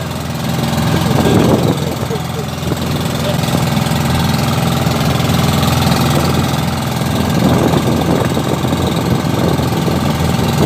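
Pump boat engine running steadily at speed, a loud even hum with the rush of wind and water over it. A few brief voices break in about a second and a half in and again near eight seconds.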